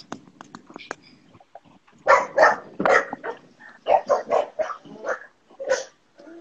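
Pet dog barking repeatedly, a quick run of barks starting about two seconds in, alerting the household to someone arriving.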